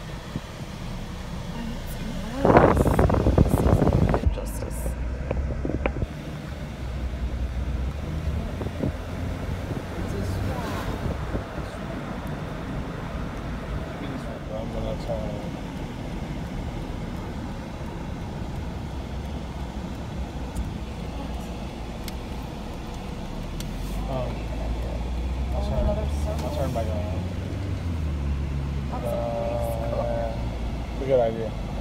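Inside a moving car's cabin: a steady low rumble of engine and tyres on the road, with a loud rushing burst about two to four seconds in.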